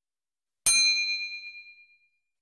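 A single bright bell 'ding' sound effect, struck once about two-thirds of a second in, ringing with a few clear metallic tones that fade out over about a second. It marks the notification bell being switched on in a subscribe animation.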